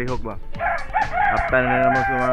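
A rooster crowing: one long call starting about half a second in, over background music with a beat.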